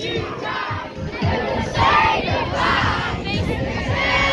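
Crowd of young children shouting and screaming together, with several high shrieks overlapping around the middle.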